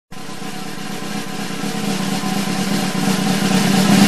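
Intro sound effect: a sustained low tone under a swelling noise, building steadily louder throughout, leading into a hit.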